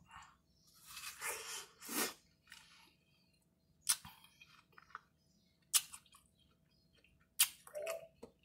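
Watermelon being bitten and chewed close to the microphone. Short, wet, crunchy bursts come every second or two with quiet between them.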